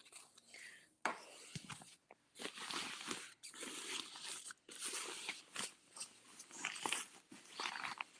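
Fabric bag and its contents rustling and crinkling in irregular bursts as it is rummaged through close to the microphone.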